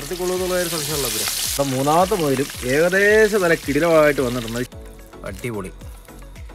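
Rabbit pieces sizzling as they deep-fry in a pan of hot oil, under a song with a sung vocal melody. The sizzling cuts off suddenly near the end, leaving the song.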